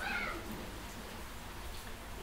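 A short high-pitched call that falls in pitch right at the start, over a faint low room hum.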